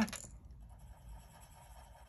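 Faint scratching of a coloured pencil on paper.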